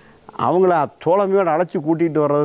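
A man speaking, starting about half a second in, over a steady high-pitched chirring of insects that runs on without a break.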